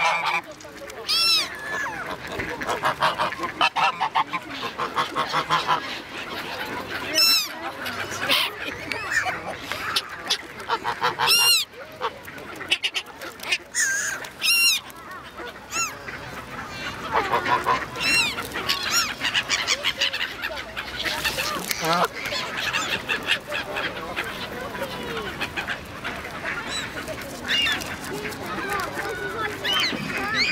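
A mixed flock of white domestic geese and Canada geese honking, with loud single honks standing out every few seconds over a constant clamour of quieter calls.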